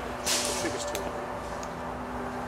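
A single air rifle shot: a short, sharp burst of hiss-like noise about a quarter-second in, followed by a couple of faint ticks, with distant voices behind.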